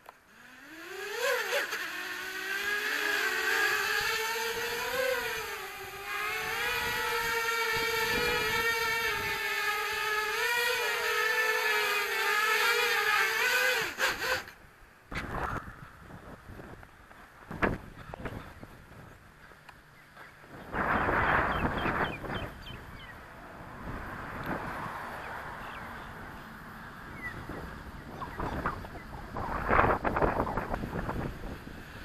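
Racing quadcopter's four Racerstar BR2205 2600KV brushless motors spinning up with a rising whine about a second in, then running hard with a wavering pitch as they lift the quad and a 5000 mAh 4S battery; the whine cuts off suddenly about 14 seconds in. After that, gusty wind on the microphone and scattered knocks, with a louder rush of noise a few seconds later.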